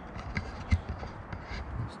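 Footsteps and handheld-camera handling noise while walking over wood chips: a few irregular soft thuds and scuffs, the sharpest about three-quarters of a second in.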